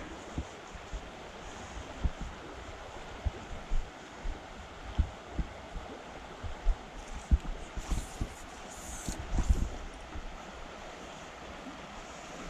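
Shallow stream riffle flowing steadily over stones, with scattered low bumps and a few brief high hisses about two-thirds of the way through.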